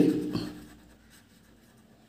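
Faint sound of a felt-tip marker pen writing on paper, a word being written stroke by stroke, after the end of a spoken word at the start.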